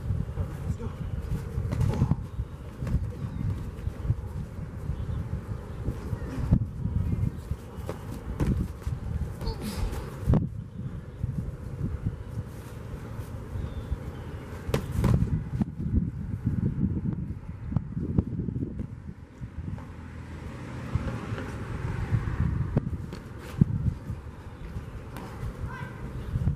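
Wind rumbling on the microphone, with scattered sharp thuds of gloved punches landing during boxing sparring.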